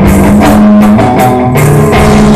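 Live psychedelic stoner rock band playing loudly: amplified electric guitar holding low notes over a drum kit, with repeated cymbal crashes several times a second.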